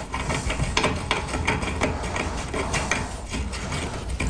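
A threaded handle being spun by hand into a Do-All Outdoors Full Cock clay-target trap: a quick run of small, irregular clicks and scrapes from the threads and the handling.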